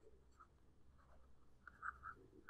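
Near silence with faint, scattered scratches of a stylus writing on a tablet, a little louder near the end.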